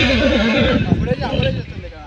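Horse neighing: one long wavering call that drops in pitch and fades just under a second in, with hooves thudding on dirt as it rears and dances.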